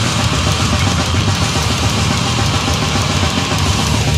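Brutal death metal recording at full volume: heavily distorted guitars over dense, fast drum-kit playing with a pounding bass drum.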